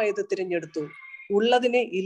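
A man's voice speaking into a close microphone, with a brief pause about a second in.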